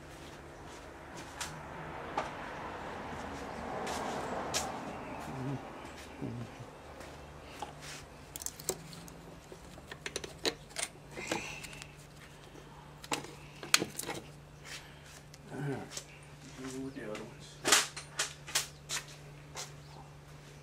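Scattered sharp clicks and light knocks of metal parts being handled as an outboard's removed cylinder head is turned over in gloved hands, over a steady low hum, with a soft rushing noise a couple of seconds in.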